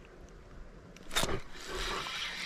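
A fishing rod being cast: a sharp swish about a second in, followed by a light steady hiss as the line pays out.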